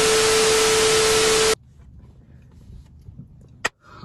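TV-static glitch transition sound effect: loud hiss of static with a steady tone under it, cutting off abruptly after about a second and a half. Quiet background follows, with a single sharp click near the end.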